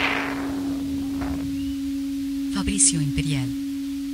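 A beatless breakdown in an early-'90s rave techno mix played back from cassette: a steady held synth tone, with a noise sweep fading down at the start and a few electronic chirps and short falling tones about two and a half to three and a half seconds in.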